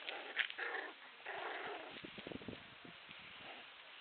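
Puppies play-fighting, giving short yelps and growls through the first two and a half seconds, then going quieter.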